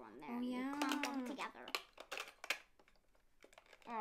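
A child's voice for about a second, then a few sharp plastic clicks and taps as markers are fitted into the plastic spine holder of a toy fashion journal.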